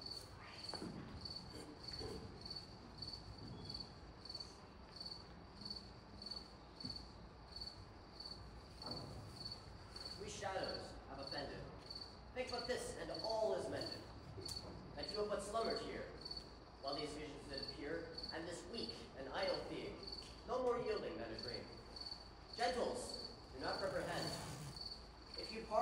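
A cricket chirping steadily at about two chirps a second. A voice speaking at a distance joins from about ten seconds in.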